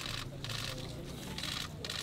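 Short bursts of rustling, about four in two seconds, as paper signs and flowers are handled and laid on a concrete floor, over a steady low hum.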